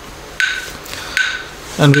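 Metronome app ticking a steady beat, one short click about every three-quarters of a second.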